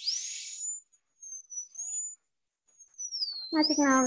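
High-speed dental air-turbine handpiece: a high whine that spins up sharply at the start with a hiss of air and water spray, stops twice briefly, then runs again, sinking in pitch about three seconds in and climbing back. The handpiece is cutting away an old restoration on the tooth.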